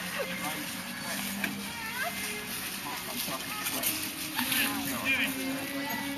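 Indistinct voices of several people talking at a distance, with a faint steady low hum underneath.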